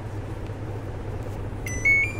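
The buzzer on an LG inverter air conditioner's indoor control board gives its power-on beep about one and a half seconds in: a clear high tone that steps up in pitch, over a steady low hum. The beep is the sign that the board has booted with its reprogrammed memory chip and cleared its CH 09 error.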